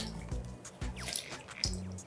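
Key lime juice dripping from a metal handheld citrus press into a glass measuring cup as a lime half is squeezed, over background music.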